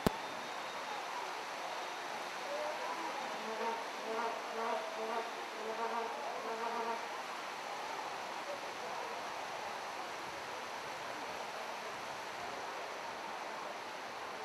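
A vuvuzela blown in a run of short, steady-pitched blasts from about two to seven seconds in, over a steady background hiss. A single sharp click right at the start.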